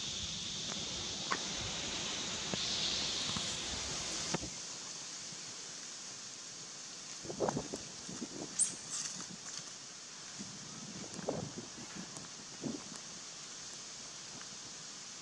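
Dry leaf litter rustling and crackling in short, scattered bursts as a macaque walks over it. A steady high hiss of outdoor background cuts off suddenly about four seconds in.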